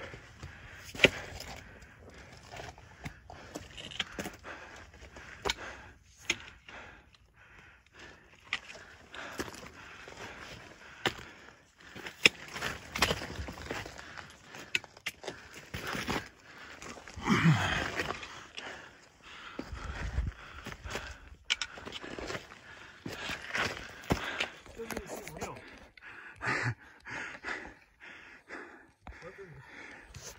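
Footsteps on loose rock: stones clattering and knocking irregularly underfoot, with dry brush scraping past and hard breathing.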